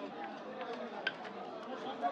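Chatter of voices in a busy market, with a few sharp scraping clicks, the loudest about a second in, as a knife strips scales off a tilapia on a wooden chopping block.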